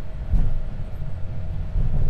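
Low rumble of an Airbus A220 rolling off the runway onto the taxiway after landing, heard inside the cockpit, with two heavier bumps from the wheels and a faint steady hum.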